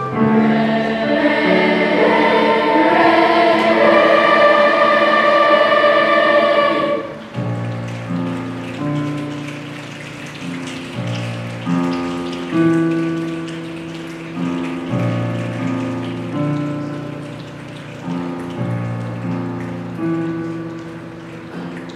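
Youth choir singing with piano accompaniment. About seven seconds in, the voices stop and the digital piano plays on alone, chords struck every second or two that ring and fade.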